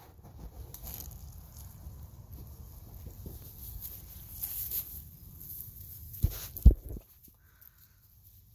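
Dry pine straw rustling and crackling under a Labrador puppy's paws as it trots across it, with two sharp knocks a little after six seconds in.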